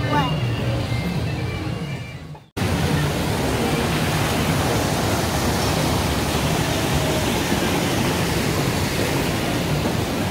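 Rushing water of a small rocky cascade: a steady, even hiss that starts abruptly about two and a half seconds in, after faint voices fade away to a moment of silence.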